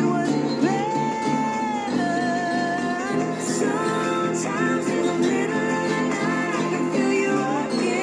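A man singing to his own acoustic guitar, with long held notes in the melody over the guitar's steady accompaniment.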